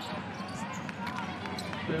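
Basketball arena sound during live play: a steady crowd murmur with a few faint knocks from the ball and court.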